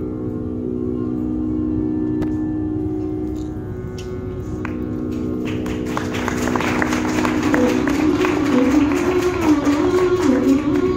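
Carnatic music: a steady drone sounds alone with a few faint clicks, then about five and a half seconds in a melody with quick sharp note attacks comes in over it and grows louder.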